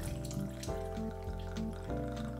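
A thin stream of liquor pouring from a bottle's metal pour spout into a glass mixing glass, with steady background music over it.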